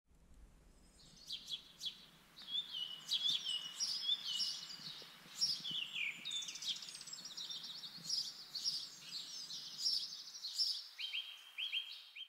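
Birds singing in woodland: a quick, varied run of chirps and trills that starts about a second in, with a short series of repeated lower notes near the end.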